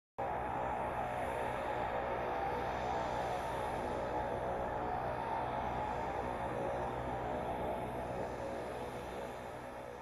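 MQ-9 Reaper's turboprop engine and pusher propeller running as the drone taxis: a steady droning buzz that eases off slightly near the end.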